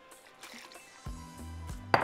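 A faint trickle of water poured from a measuring cup into a plastic slow cooker liner. About halfway through, background music with a steady low bass line comes in and becomes the main sound. There is a sharp knock near the end.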